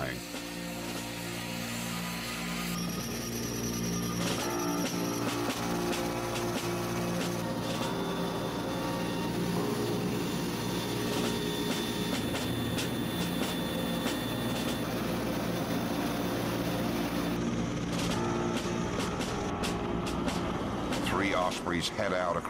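Background music with held, slowly shifting chords, mixed over the steady drone of a V-22 Osprey tiltrotor's engines and rotors.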